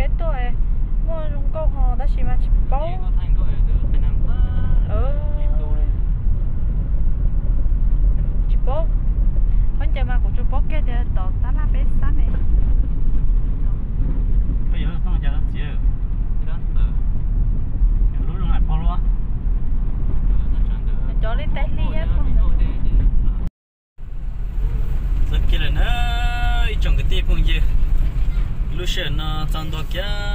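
Steady low road and engine rumble inside a moving car's cabin, with voices talking over it. The sound drops out for a moment about three-quarters of the way through.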